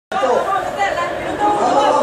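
Several people chattering over one another, with no clear words.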